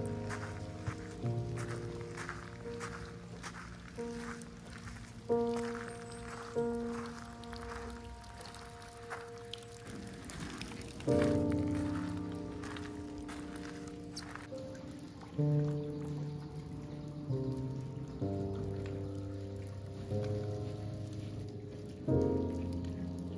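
Slow background music of soft chords, each struck and left to fade every second or two, over a light patter of rain.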